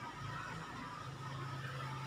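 A steady low hum over even background noise, with no clear event.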